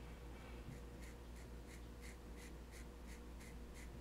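A felt-tip marker drawing a line on the side of a roll of tape, in short faint strokes about three a second, starting under a second in.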